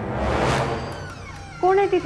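A swelling whoosh of eerie background score, then near the end a loud, drawn-out cat meow that bends in pitch, a horror-style sound effect.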